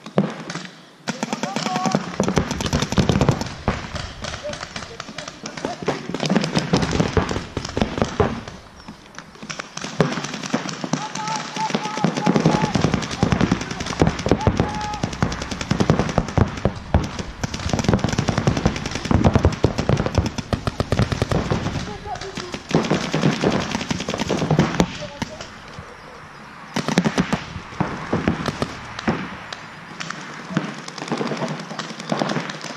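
Paintball markers firing in rapid strings of shots during a game, with voices calling out between them.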